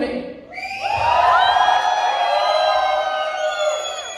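Audience of many voices cheering and whooping together, swelling up about a second in and held for a few seconds.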